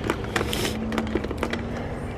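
A few sharp clicks and knocks, with a brief rustle about half a second in, from hands handling the plastic bodywork and hoses of a dirt bike. A faint steady hum lies underneath.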